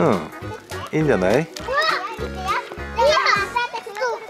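Background music with a steady beat, over which a young child's high voice makes several wordless calls that sweep up and down in pitch.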